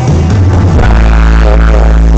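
Live rock band playing on stage, with electric guitar, drums and keyboards, recorded very loud from the audience.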